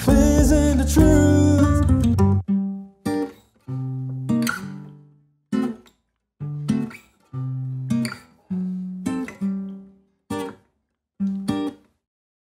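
Song outro: the full band stops about two and a half seconds in, leaving a series of single acoustic guitar strums, each ringing out and stopping, with short silences between them.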